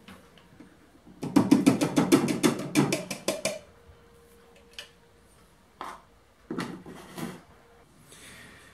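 Plastic bowl of a small food processor being handled and tipped out: a quick run of sharp plastic knocks and rattles for about two seconds, then a few single knocks, with a faint steady hum under the second half.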